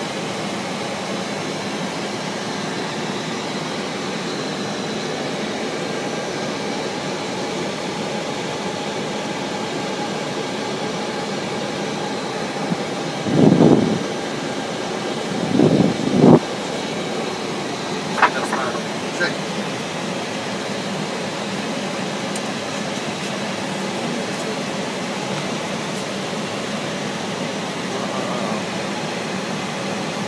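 Steady cockpit noise of an airliner in descent on approach: the even rush of airflow and air-conditioning fans. Two brief louder sounds come about halfway through, and a few short faint ones follow soon after.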